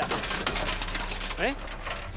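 Quick clicks, rattles and scrapes as a cut sheet-metal false floor is handled and lifted out of a car's boot, densest in the first second. A short 'eh?' is spoken about a second and a half in.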